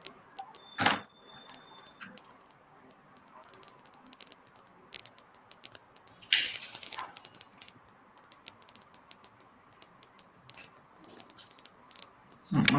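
Faint scattered clicks and taps at a computer, like keys and a mouse being pressed, with a sharper click about a second in and a short rustling noise about six seconds in.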